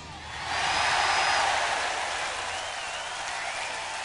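Concert audience applauding and cheering at the end of a rock song, with a few high shrill voices or whistles above the clapping. It swells about half a second in, then slowly dies down.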